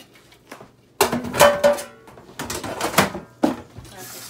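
Baby potatoes rattling and tumbling in a nonstick air fryer basket as it is shaken to coat them in oil and seasoning: two loud bouts of clatter, the first about a second in, the second with a sharper knock near the end.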